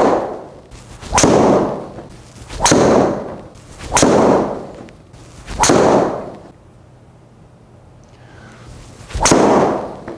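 Golf driver striking balls, each hit a sharp crack that dies away over about a second in a small indoor bay. There are six hits: five come about every second and a half, and the last follows a longer gap.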